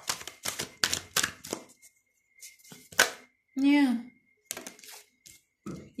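Tarot cards being shuffled and drawn by hand: a quick run of sharp papery clicks in the first second and a half, a single louder snap about three seconds in, and a few more clicks near the end.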